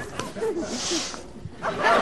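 Low voices murmuring, a short hiss about halfway through, then laughter breaking out near the end and quickly getting loud.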